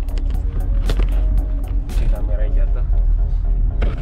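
Mercedes-Benz CLK 230 Kompressor convertible driving with the top down: steady low rumble of the car and wind on the microphone, with repeated knocks from the camera being handled. Background music plays over it.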